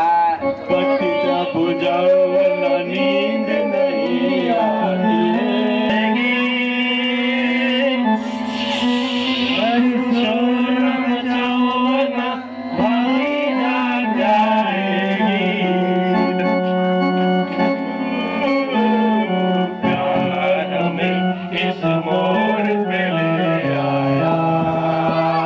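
A man singing into a microphone over electronic keyboard accompaniment, with sustained organ-like notes that change step by step under the voice.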